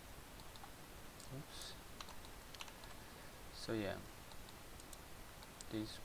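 Sparse, faint clicks of a computer mouse and keyboard while polygons are being selected. A short wordless vocal sound comes about four seconds in.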